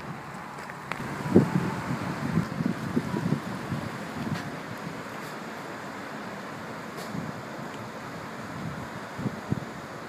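Wind buffeting the microphone in irregular low gusts, bunched in the first few seconds and again briefly near the end, over a faint steady outdoor hiss.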